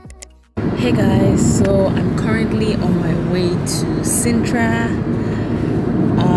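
Steady road and engine noise inside a moving car, starting suddenly about half a second in as music fades out, with a woman talking over it.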